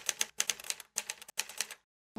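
Typewriter keys clacking in a quick, uneven run of sharp strikes with a few brief pauses, typing out a title word by word, then stopping shortly before the end.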